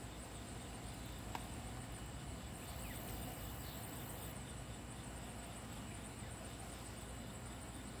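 Faint outdoor background of insects chirping in a steady, rapid high pulse over a low rumble, with one light tick about a second and a half in.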